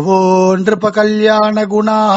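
A man's voice chanting a verse on a steady held pitch, in two long sustained stretches with a short break under a second in.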